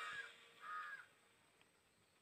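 Two short, faint crow caws in the first second, then near silence.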